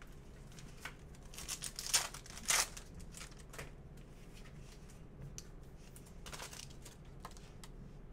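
A sports card pack's wrapper crinkling and tearing in a few quick rustles about two seconds in, followed by fainter rustling as the cards are handled.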